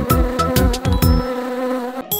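Cartoon bee buzzing sound effect, a steady buzz over a song's beat that drops out a little after a second in.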